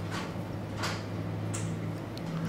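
Steady low room hum with a few faint ticks from hands working hackle pliers and turkey-quill material at a fly-tying vise.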